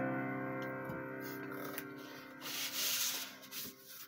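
The last chord of a digital keyboard's piano voice rings on and fades away. About two and a half seconds in, paper rustles and rubs for about a second as a music booklet is handled.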